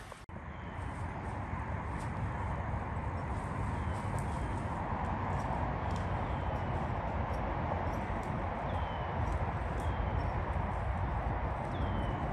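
Steady outdoor roadside noise with a low rumble of highway traffic and wind, slowly growing louder, with a few faint, short, high chirps every second or two.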